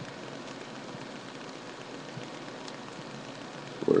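Steady, even hiss of background noise with no distinct sound in it.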